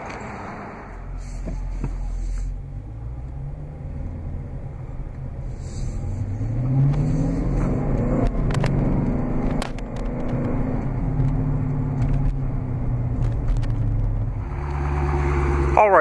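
The 6.4-litre SRT Hemi V8 of a Dodge Challenger R/T Scat Pack running, heard from inside the cabin. Its note rises from about five to seven seconds in, then settles to a steady low run, with a few light clicks in between.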